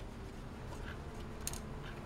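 Low steady hum with one light, short click about one and a half seconds in, from screws being worked out of a metal PC drive cage.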